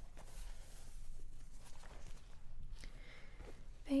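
Microfiber cloth rubbing and wiping eyeglass lenses: quiet, irregular rustling.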